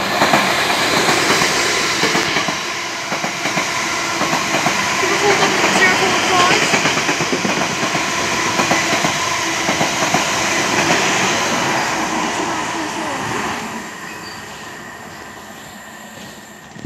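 Two coupled Class 444 Desiro electric multiple units passing through a station, their wheels clattering over the rail joints. The noise stays loud, then fades away over the last couple of seconds as the train leaves.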